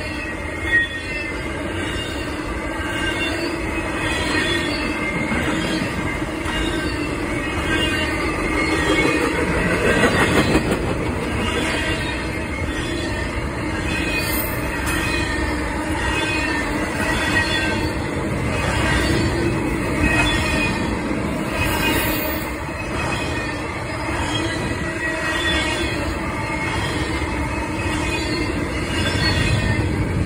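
Double-stack intermodal freight cars rolling past at track level: a steady rumble of wheels on rail, with high-pitched, wavering wheel squeal throughout. There is a single sharp knock about a second in.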